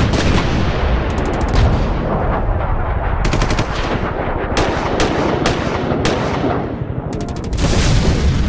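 Sound effects for an animated logo intro: a loud, dense rumble broken several times by quick rattles of sharp hits, with single sharp cracks between them.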